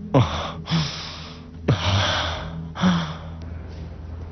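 A man gasping in pain: four heavy gasping breaths, roughly one a second.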